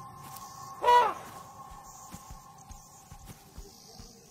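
An elephant calf gives one short squeal about a second in, rising and then falling in pitch, over a soft held music drone.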